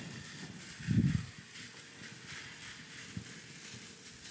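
Crepe batter sizzling in a hot nonstick skillet as it is poured in and the pan is tilted to spread it, with a short dull knock about a second in.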